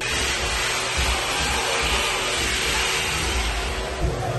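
Wall-mounted electric hand dryer blowing: a steady, loud rush of air.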